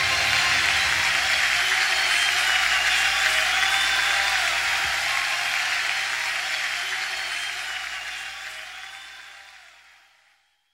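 Audience applauding at the end of a live song, a steady wash of clapping that fades out over the last few seconds.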